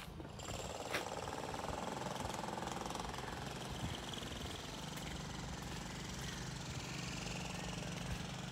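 A Mazda5 people carrier's engine idling steadily, a low hum coming in more strongly about halfway through.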